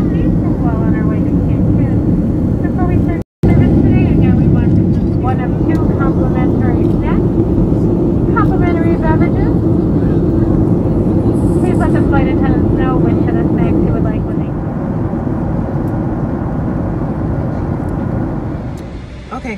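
Airliner cabin noise in flight: a loud, steady low rumble of the jet engines and airflow, with indistinct voices over it. The sound cuts out briefly about three seconds in.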